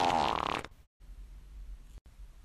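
A woman's drawn-out non-verbal vocal noise that stops abruptly under a second in, followed by a faint low hum.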